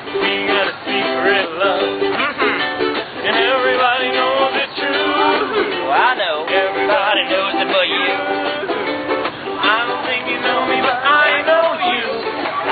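Ukuleles and an acoustic guitar strummed together in steady chords, a small acoustic street band playing a song.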